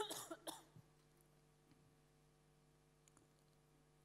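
A brief cough into a microphone at the very start, then near silence: a faint steady hum with a few faint clicks.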